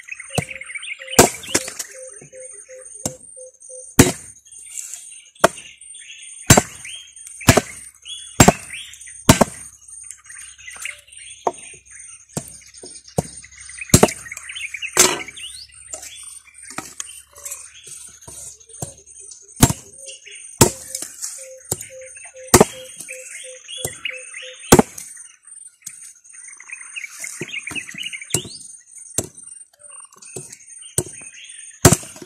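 Machete blade chopping through cassava stems onto a wooden board, cutting them into short pieces: sharp single chops every second or so, with a pause of a few seconds in the middle and again near the end.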